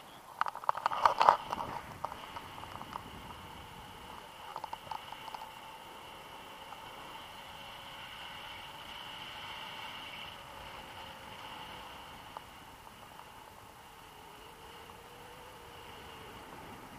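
Knocks and rattles from a handheld action camera being turned on its pole, loudest in the first second and a half and again briefly around five seconds in, then a steady rush of air over the camera in flight.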